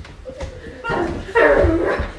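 Dog-like yelps: two pitched calls back to back starting about a second in, each falling in pitch.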